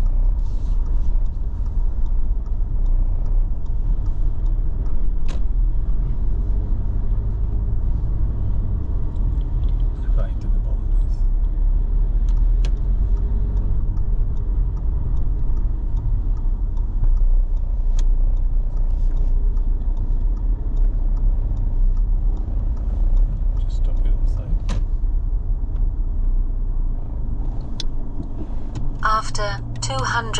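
Car driving slowly, heard from inside the cabin: a steady low rumble of engine and road noise, with a few faint clicks.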